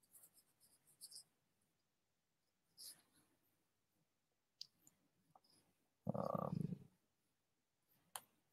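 Near silence: faint room tone over the host's microphone, with a few faint scattered clicks and one brief muffled noise about six seconds in.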